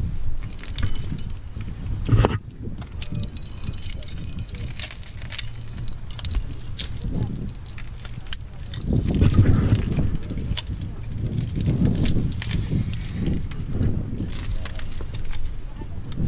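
Metal climbing hardware (carabiners, cams and nuts on the rack) clinking and jangling as a trad climber handles and places protection in a granite crack, with one sharper knock about two seconds in and low rustling from movement against the rock.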